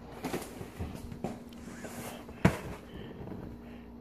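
Quiet handling of cardboard cereal boxes as one is put down and another picked up, with a few light knocks and one sharper knock a little past halfway.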